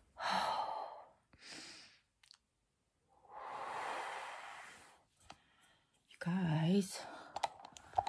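A woman's heavy breaths and sighs through pain: two short breaths, then a long sighing exhale about three seconds in, and a brief voiced sound near the end.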